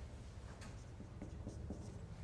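Marker pen writing on a whiteboard: a few short, faint strokes as a formula is finished, over a low steady room hum.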